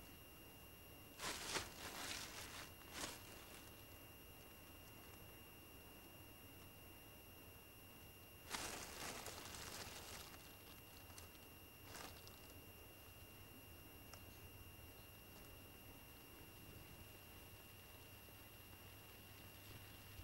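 Plastic bag rustling in short bursts as limestone pieces are handled in it: twice near the start and again for about two seconds some eight seconds in, with a faint click about twelve seconds in. In between it is near silence with a faint steady high tone.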